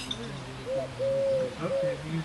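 A dove cooing in a three-note phrase, a short note, a long held one and a shorter one, starting about half a second in, over low voices talking.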